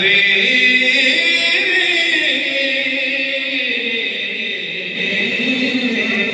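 A man's voice chanting a naat unaccompanied through a microphone, holding long notes that step down in pitch.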